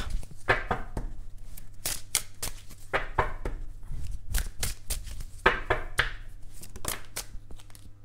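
Gold-edged tarot deck being shuffled by hand: a run of quick, irregular card snaps, with a few longer slides of the cards against one another.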